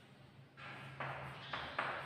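Chalk writing on a chalkboard: a run of short scratchy strokes starting about half a second in, several beginning with a sharp tap of the chalk against the board.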